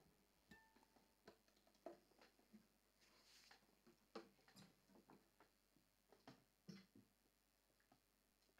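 Near silence, broken by faint scattered clicks and knocks from an acoustic guitar being handled.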